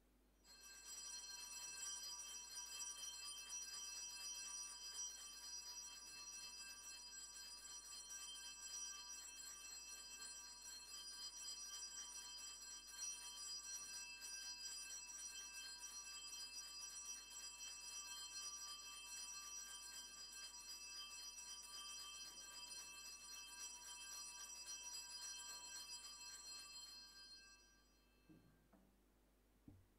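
Altar bells rung continuously, a faint, steady high metallic ringing, marking the blessing with the Blessed Sacrament in the monstrance. It starts about half a second in and stops just before the end.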